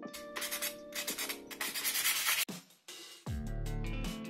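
P120 sandpaper rubbed in quick rasping strokes over a flat bisque-fired clay ornament, smoothing it before glazing, over background music; the sanding cuts off about two and a half seconds in and the music carries on.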